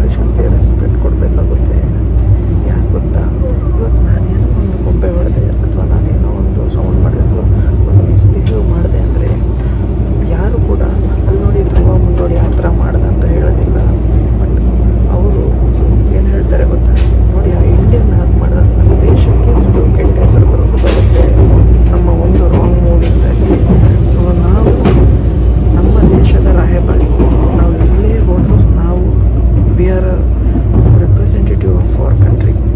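Steady low rumble of a Tobu Spacia limited express train running at speed, heard from inside the passenger cabin.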